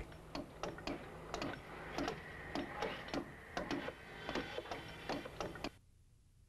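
Light knocks of carpentry work on timber roof rafters, hammer-like, about three a second and fairly even. They stop suddenly just before the end.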